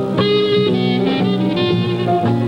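Clarinet playing a jazz melody, one note after another, over a jazz band accompaniment with guitar.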